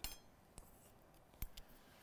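Knitting needles softly clicking and clinking against each other while a stitch is cast on. There are a few brief ticks: a light clink right at the start, a fainter one about half a second in, and a sharper tick about a second and a half in.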